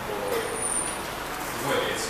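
A man speaking into a microphone in short phrases with pauses, his voice amplified through a public-address system. A thin, high-pitched whistle sounds for under a second near the start.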